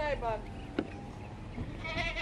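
A goat bleating, a wavering call that fades out within the first second or two, with people talking close by.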